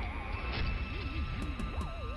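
A deep, low rumbling film sound effect with music, accompanying a magical transformation of seeds into fruits; the rumble cuts off shortly after the transformation appears.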